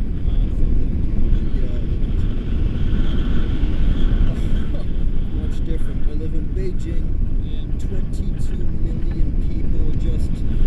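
Wind from a paraglider's flight rushing over a selfie-stick action camera's microphone: a loud, steady low rumble.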